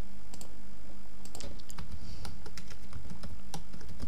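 Computer keyboard typing: irregular separate keystrokes over a steady low hum.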